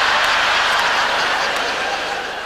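Large theatre audience laughing, a sustained wave of laughter that eases off slightly near the end.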